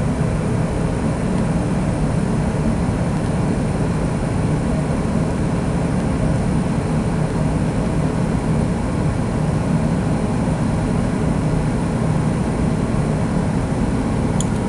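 Steady, loud mechanical noise: an even rush with a strong low hum, like a machine or fan running.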